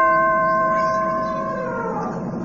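A bell-like chime struck once, a chord of steady ringing tones that slowly fades and dips slightly in pitch near the end: the read-along's page-turn signal.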